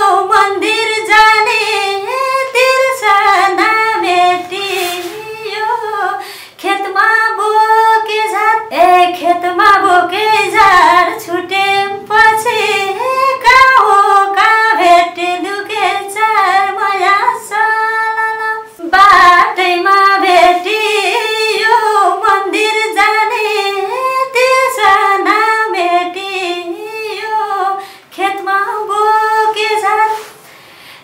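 A woman singing a Nepali song unaccompanied, a high, ornamented vocal line that breaks off briefly for breath a few times.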